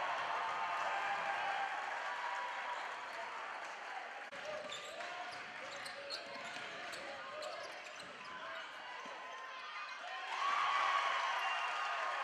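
Live sound of a basketball game in a gym: a ball dribbling on the hardwood among players' and spectators' voices. The sound gets louder about ten and a half seconds in.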